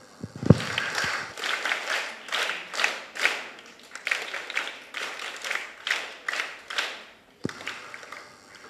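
Small audience clapping, starting about half a second in and stopping near the end. A sharp thump comes as the clapping starts, and a softer one just before the end.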